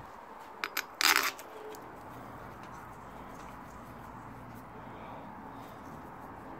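Two light clicks followed by a brief, sharp metallic clatter about a second in, from the rocker shaft assembly being handled on a pushrod V8's cylinder head; the rest is low, steady workshop room tone.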